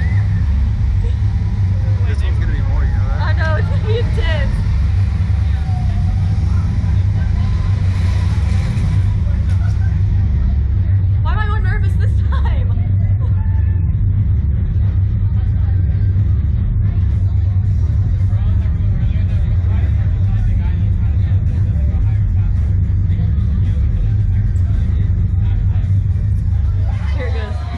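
Loud, steady wind rumble buffeting the microphone of the camera mounted on a Slingshot ride capsule as it flies through the air. The riders' brief shouts and laughs break through a few times.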